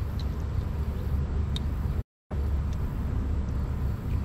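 Steady low rumble of wind buffeting the microphone outdoors, with a few faint ticks over it; the sound drops out to silence for a moment about halfway through.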